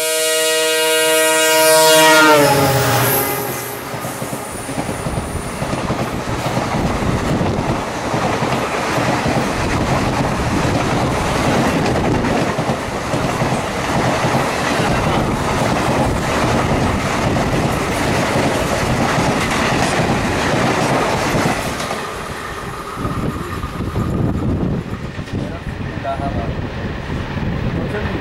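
WDP-4D diesel locomotive sounding its horn on approach, the pitch dropping as it passes about two seconds in. Then the express's coaches rush past close by on the adjacent track with a steady roar and wheel clatter for about twenty seconds, fading a little after twenty-two seconds as the last coach goes by.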